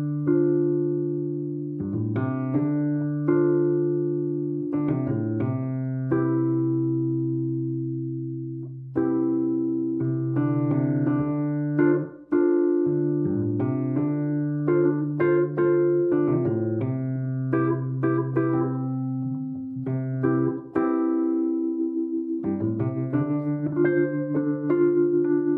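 Wurlitzer 214VA reed electric piano played through its built-in speaker system: slow chords struck every second or two and held over sustained bass notes, with a brief break in the sound about halfway through.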